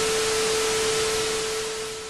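VHS-style static sound effect: a steady hiss with a steady tone running under it, starting to fade near the end.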